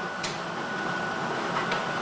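Lottery ball drawing machine running, a steady whirring noise with a thin high whine through it, and a couple of light clicks as a ball is delivered into the exit chamber.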